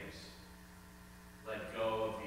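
Steady electrical mains hum from the church's sound system, heard through a pause in a man's speech. The voice resumes about one and a half seconds in.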